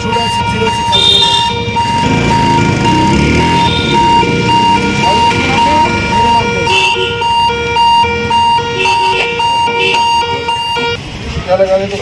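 An electronic tune playing from a mobile phone, a steady repeating pattern of short beeping notes, with a phone number just dialled; it cuts off near the end.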